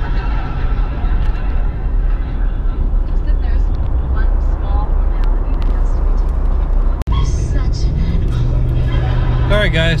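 Steady road and engine noise heard inside a moving vehicle's cabin at highway speed, broken by a sudden instant of silence about seven seconds in, after which it resumes with a steady low hum.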